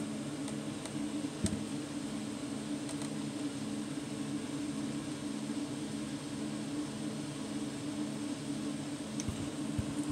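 A steady mechanical hum holds throughout, with a single sharp click about one and a half seconds in and two faint ticks near the end.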